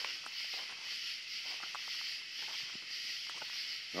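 A steady, high chorus of night insects, with faint scattered scratching and rustling close by.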